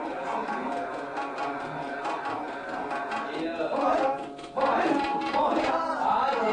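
Live Hindustani classical performance: tabla strokes under a singing male voice, the voice growing louder about four and a half seconds in.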